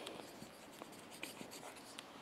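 Faint scratching of a felt-tip marker writing and drawing on paper, in a few short strokes.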